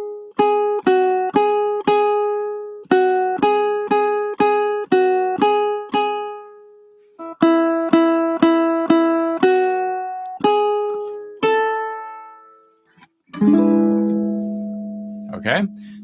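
Ukulele melody picked one note at a time, in three short phrases of plucked notes with brief pauses between them. It ends on a note that is left to ring and fade.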